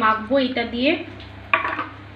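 A woman's voice trails off in the first second, then comes a short clatter of stainless-steel bowls knocking together about a second and a half in.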